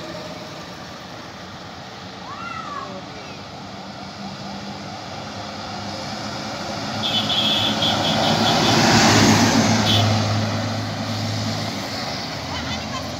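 A coach bus approaching on the highway and passing close by about nine seconds in. Its engine and tyre noise builds to a peak and then fades as it drives away.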